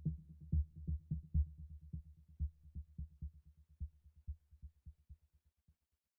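The fade-out ending of an electronic trance track: only a muffled low beat of kick and bass pulses is left, growing steadily fainter until it dies away just before the end.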